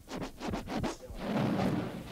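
DJ scratching a record on a turntable: several quick back-and-forth strokes in the first second, then a longer, rougher stretch of sound over the music.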